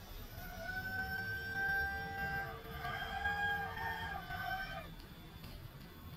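Rooster crowing: two long, drawn-out crows that overlap, ending just before five seconds in.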